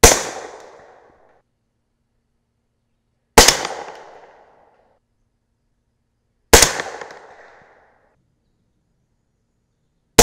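Three suppressed rifle shots from a 10.3-inch 300 Blackout AR firing subsonic 200-grain Maker Rex handloads, about three seconds apart. Each is a sharp report that trails off over about a second. The loads are too low in velocity to cycle the action.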